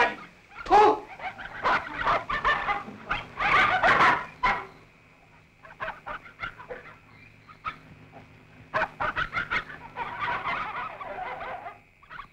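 Loud wordless human vocal cries in two bursts: one lasting about four seconds, then a quieter stretch, then more cries from about nine seconds in.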